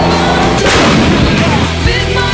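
Loud rock music with a single gunfire blast cutting across it about half a second in, trailing off over about a second.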